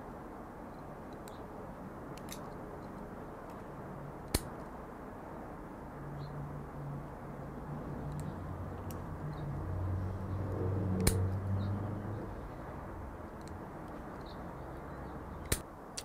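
Milwaukee 7-in-1 high-leverage combination pliers stripping and cutting 14-gauge solid wire: a few sharp clicks as the jaws snap through the wire, the loudest about four seconds in. A low rumble rises in the middle and fades again.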